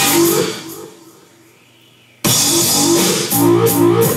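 Loud live experimental electronic music, a dense noisy wash with repeating pitched notes. It fades away within the first second, leaves a quiet gap, then cuts back in suddenly at full volume a little past two seconds.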